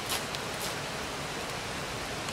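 Wood fire burning: a steady hiss with a few faint crackles early on.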